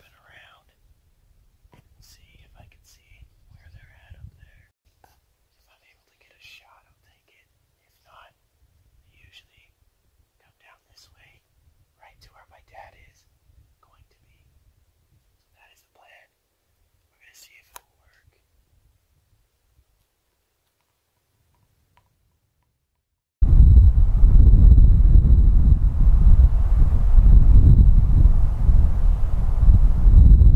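A man whispering in short phrases for the first eighteen seconds or so. After a few seconds of quiet, a loud, steady wind rumble on the microphone starts suddenly about twenty-three seconds in, with a faint thin high whine over it.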